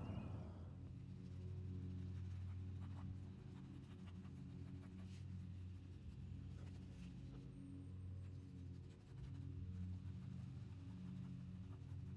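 Quiet background music of sustained low tones that change pitch every few seconds, with faint scratchy snips of scissors cutting through sandpaper glued to canvas.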